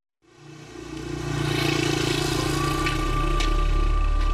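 Motorcycle engine running steadily. It fades in from silence just after the start and is at full level about a second and a half in.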